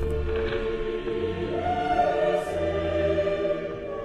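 Dramatic choral music with long held notes, a higher voice entering about a second and a half in.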